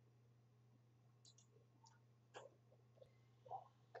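Near silence: a few faint, scattered computer mouse clicks over a faint low hum.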